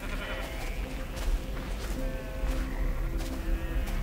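Sheep and goats bleating a few times over soft background music.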